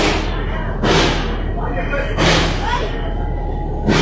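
Four loud, sudden bursts of sparking from outside a moving train carriage, over the steady low rumble of the train running.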